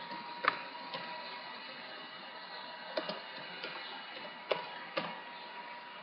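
Computer keyboard keys clicking: about seven short keystrokes at irregular spacing, over a low steady hiss with a thin steady tone.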